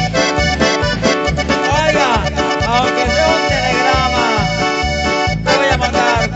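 A live band plays an instrumental passage: an accordion-toned melody, running and ornamented, over a steady pounding bass beat of about two beats a second.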